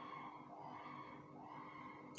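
Faint, distant voice of a person shouting out in the street, coming in repeated phrases over a low steady hum.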